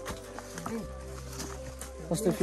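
Soft background music with a couple of long held notes over a low steady hum, in a short pause between spoken lines.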